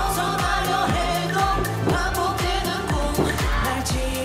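K-pop dance song with a male voice singing Korean lyrics over a steady kick drum and sliding bass notes.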